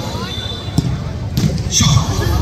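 Crowd chatter with a sharp thud of a football being kicked a little under a second in.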